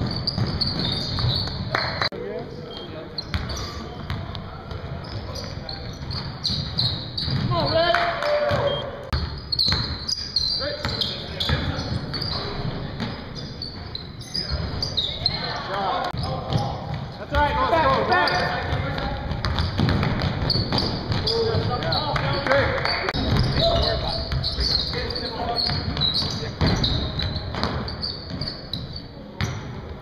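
Basketball being dribbled and bounced on a hardwood gym floor during a game, with sneakers squeaking and players calling out, all echoing in a large hall.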